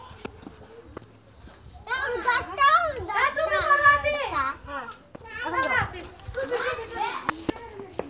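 A young child's high voice making long, wavering wordless sounds from about two seconds in, then two shorter bursts near the end.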